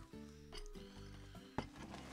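Quiet background music with held, sustained notes that change a couple of times. A single sharp click sounds about one and a half seconds in.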